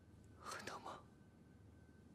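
A short whispered sound from a person, lasting about half a second and starting about half a second in, against near silence.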